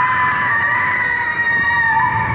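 Sound effects from a 1970s Hong Kong monster-movie soundtrack: a sustained high tone, held nearly steady, over a low rumbling noise.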